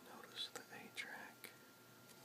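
Soft whispering close to the microphone for about a second and a half, then quiet room tone.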